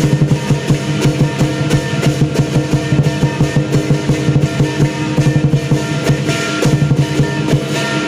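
Southern lion dance percussion ensemble playing: a big lion drum beats a fast, steady rhythm over ringing cymbals and gong.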